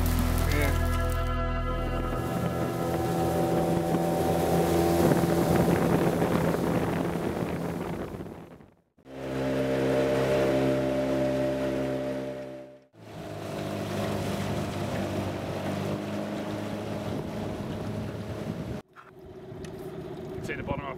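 Small boat's outboard motor running steadily under way, the sound breaking off abruptly three times where short clips are joined.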